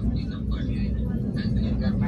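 Steady low rumble of a passenger train running over a steel truss bridge, heard inside the coach, with people talking over it.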